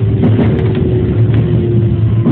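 JR West 207 series electric train heard from inside the driving cab as it runs into a station: a steady low rumble of the running gear with a motor hum that falls slightly in pitch as the train slows.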